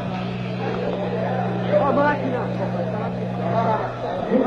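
Voices talking on a stage over a steady low electrical hum from the amplification, which cuts out just before the end.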